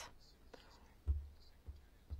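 A pause in the speech: faint room tone on the microphone, with a soft low thump about a second in.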